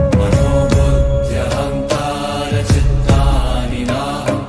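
Hindu devotional music: a chanting voice over a steady held drone, with drum strokes at a loose, regular beat.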